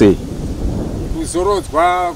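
Low rumbling of wind buffeting the microphone outdoors, with a man's voice speaking a couple of short syllables in the second half.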